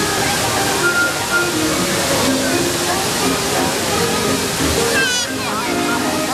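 Water jets of a large musical fountain splashing with a steady hiss, while the show's music plays over loudspeakers and the crowd talks.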